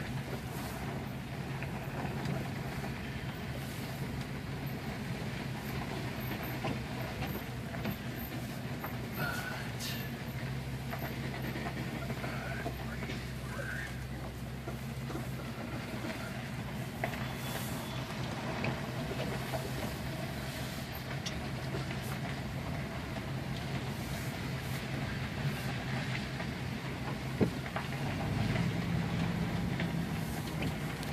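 Vehicle engine running at low speed, with tyres rolling over a gravel road, heard from inside the cab. There is a sharp click a little before the end, and then the engine note rises and gets louder.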